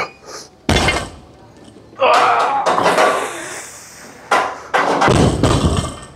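Loaded deadlift barbell with rubber bumper plates (315 lb) coming down onto the rubber gym floor with a heavy thud about two-thirds of a second in, and again with deeper thuds near the end. In between there is the lifter's loud strained breathing and grunting through a rep.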